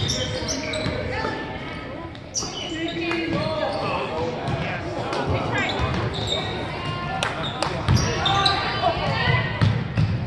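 Basketball bouncing on a hardwood gym floor with repeated sharp knocks, under shouting voices of players and spectators, echoing in a large gym.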